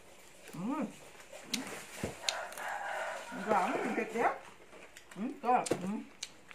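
A woman's drawn-out 'mmm' of relish while eating, rising and falling in pitch, heard twice, with a longer wavering vocal sound in the middle. Small mouth clicks come in between as she chews.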